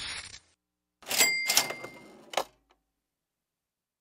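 Cash register sound effect: a brief noisy burst at the start, then about a second in a cash-register ka-ching whose bell rings for about a second, ending in a sharp click.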